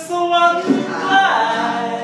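Singing voice holding a sung phrase, with acoustic guitar behind it, giving way about two-thirds of a second in to a short noisy stretch.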